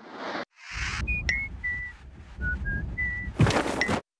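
Sound-designed logo sting: two quick whooshes, then a string of short, steady whistle-like tones at different pitches over a low rumble, ending in a loud whoosh that is the loudest part.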